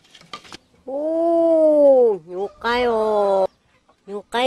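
Two long, drawn-out vocal cries. The first lasts over a second, its pitch rising a little and then falling away. The second is shorter and comes about half a second after the first ends.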